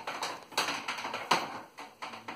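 The mains cable of a cordless/corded wet and dry vacuum is unwound and pulled off the plastic vacuum body. The plug and cable make a few irregular clicks and knocks against the housing, the sharpest a little past halfway.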